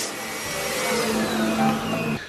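Electric hand dryer blowing: a steady loud rushing of air.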